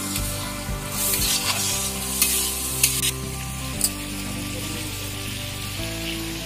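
Food sizzling in oil in a large iron wok (karahi) over a wood fire, stirred with a metal spatula that scrapes and clinks sharply against the pan a few times.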